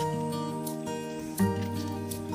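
Background music with held chords, a new chord struck about one and a half seconds in.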